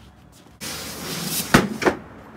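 Plastic shower pan being slid and fitted into its wooden frame: a scraping slide for about a second, then two sharp knocks near the end.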